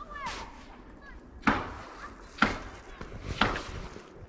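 Footsteps in the snow lying on a frozen canal's ice, three steps about a second apart.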